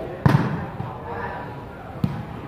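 A volleyball struck hard by hand once, a sharp slap about a quarter second in, over background voices.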